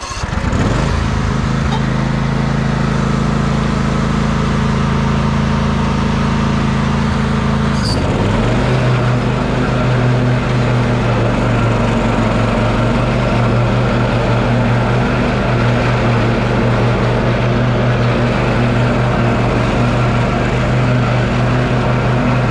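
Husqvarna YTA24V48 riding lawn tractor's V-twin engine running steadily under mowing load. About eight seconds in, its note briefly dips and then settles at a slightly different pitch.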